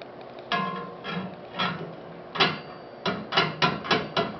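Aftermarket steel flex plate clunking against a Dodge Cummins crankshaft as it is rocked on the crank: a few separate metallic knocks with a short ring, then a quicker run of knocks near the end, about four a second. The rattle is the sign of a sloppy, loose fit with excess play on the crank.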